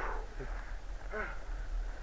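Brief, faint human vocal sounds: a short breathy burst at the start, then two short voiced sounds about half a second and a second in, over a steady low rumble.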